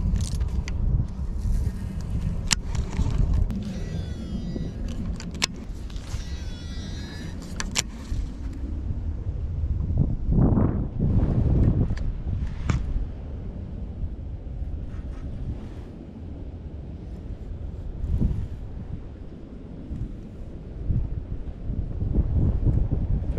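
Wind buffeting the microphone as a steady low rumble, swelling louder for a couple of seconds around the middle. A few sharp clicks come through in the first several seconds.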